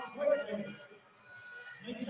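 A voice speaking briefly in the broadcast audio, then a steady high-pitched tone with overtones lasting about half a second, starting just over a second in.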